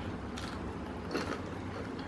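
Crisp coating of KFC fried chicken crunching as it is bitten and chewed: a few short, sharp crackles about half a second in and again just after a second.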